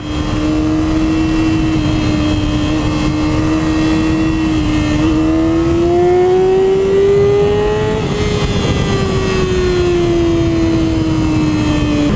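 Yamaha YZF-R6's 599 cc four-cylinder engine running under way, holding a steady note. It climbs in pitch for a few seconds from about the middle, then eases back down near the end.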